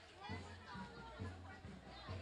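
Crowd of young marchers and onlookers chattering and calling out, over a steady low beat of about two pulses a second.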